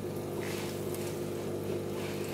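Aquarium filter pump humming steadily, with water rushing and burbling over it; the water noise swells briefly about half a second in.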